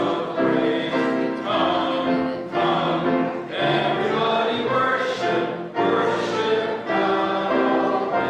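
Church choir singing together, with sustained notes phrase by phrase and short breaks between phrases.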